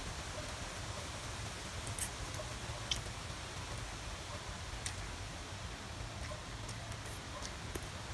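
Quiet eating of ramen noodles: chewing and slurping, with a few brief mouth smacks, over a low steady rumble.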